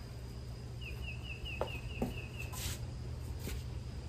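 A bird calling a quick run of about eight short, high, evenly spaced notes about a second in, over a low steady background hum, with a couple of faint clicks.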